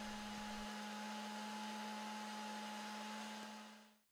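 Battery-powered toy bubble machine's fan motor running steadily, a quiet hum with a whirring hiss, fading out near the end.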